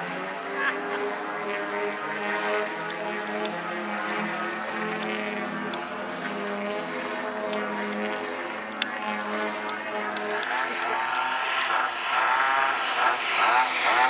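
Two large-scale RC aerobatic planes (EG Aircraft Slick 540s on 120cc two-stroke gas engines) flying overhead, their engines and propellers droning steadily at first. From about ten seconds in the pitch swings up and down and the sound grows louder as the planes come down low and close.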